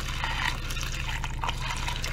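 Hot malt-extract wort pouring in a steady stream from a pot into a fermenter partly filled with cold water, splashing and gurgling as it fills.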